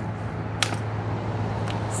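A color guard practice rifle smacking into the hands as it is caught from a double toss, one sharp slap about half a second in, over a steady low background hum.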